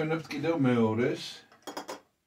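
A man's voice briefly, then a quick cluster of sharp clinks and knocks near the end as a large painted wooden icon is set back in place among metal and glass objects on a crowded shelf.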